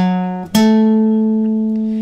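Acoustic guitar playing single plucked notes, each left to ring: an F♯ on the 9th fret of the fifth string sounds at the start, then an A on the 12th fret of the fifth string is plucked about half a second in and held, slowly fading.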